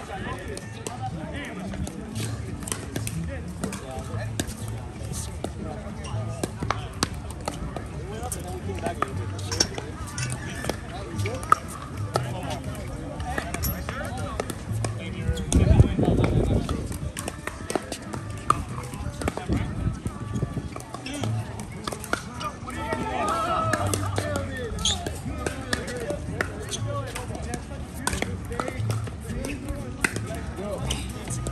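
Pickleball paddles striking a plastic ball, heard as scattered sharp pops, over background music and indistinct voices. A brief, louder low rumble about halfway through.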